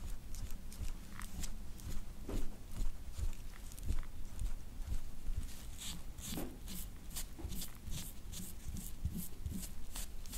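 A metal scraper drawn in repeated short strokes across oiled skin on a lower back: soft scraping, about two strokes a second in the second half, with low bumps from handling.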